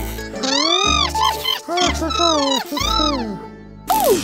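Cartoon soundtrack: music with a string of swooping, rising-and-falling comic notes, about one every half second, over low bass notes. Near the end a sudden noisy burst comes in as the electric shock strikes.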